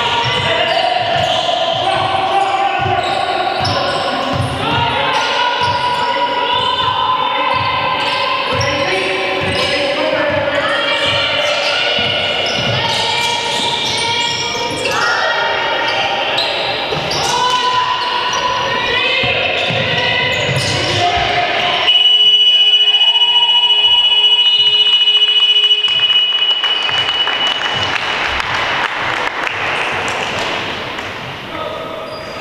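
Basketball being dribbled on a hard court, with players' and crowd voices, then a scoreboard buzzer sounding one loud, steady tone for about four seconds near the end: the horn ending the quarter.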